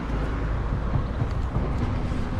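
Steady low rumble of wind buffeting the microphone and road noise while moving along a street, with a faint steady hum underneath.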